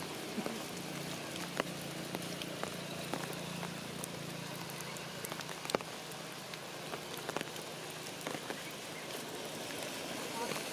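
Rain falling on tree leaves: a steady hiss with scattered sharp ticks of single drops.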